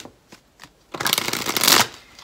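A tarot deck shuffled by hand: a few light taps of the cards, then about a second in a loud, dense, rapid flutter of cards lasting nearly a second.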